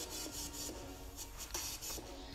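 Faint rubbing and light handling noises with a few soft ticks, as hands pick up and handle makeup items.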